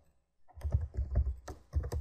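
Computer keyboard being typed on: about half a second of quiet, then a run of keystrokes at about four a second.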